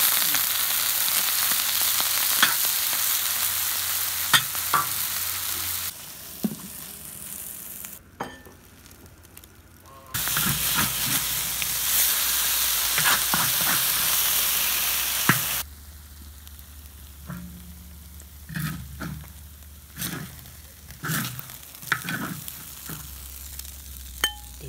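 Pickled sour pork in a rice-meal coating frying in oil in a large iron wok, sizzling loudly, with a metal spatula scraping and knocking against the wok as it is stirred. The sizzle drops and returns in abrupt steps, and the spatula strokes stand out more in the quieter second half.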